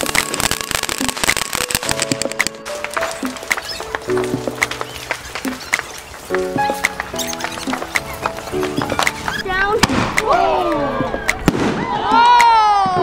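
Consumer fireworks crackling and popping in many sharp cracks, under background music with steady chords. Near the end, voices call out.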